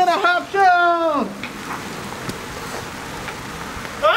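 A person's voice calling out in short syllables and then one long drawn-out cry that falls in pitch, over in about the first second, followed by a steady hiss of rain.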